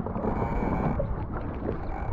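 Wind buffeting the microphone over the uneven rush of a small sailing dinghy moving through choppy water.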